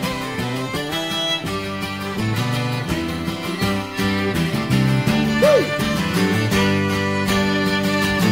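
Instrumental break in a folk ballad between sung verses: acoustic guitar playing the tune with other instruments, no singing.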